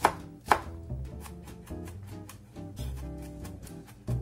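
Chef's knife chopping garlic on a bamboo cutting board. Two sharp knocks near the start are followed by a run of quicker, lighter chops as the cloves are minced fine.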